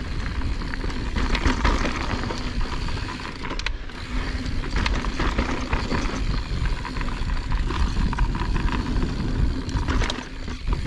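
Mountain bike riding fast down a dry dirt trail: tyres rolling and crunching over dirt and small rocks, the bike rattling over bumps, with a steady low rush of wind on the camera microphone.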